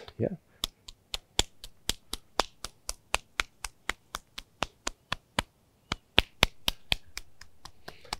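An open palm slaps quickly along the inside of the forearm in tuina-style self-massage, about four slaps a second, with a short break a little past the middle.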